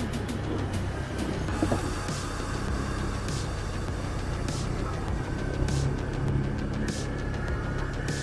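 Background electronic music with a sharp beat about once a second, over the steady running of an ATV engine.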